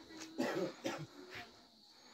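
A person coughing three times, faintly, in short bursts about half a second apart.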